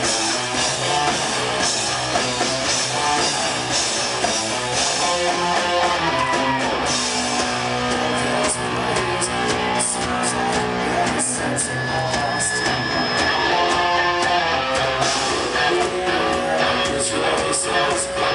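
Live hard rock band playing loud and without a break: electric guitars, bass and drums. It is recorded from within the audience.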